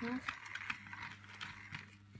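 Plastic toy train engine and tender being handled on carpet: a few light, irregular clicks and rattles of plastic parts.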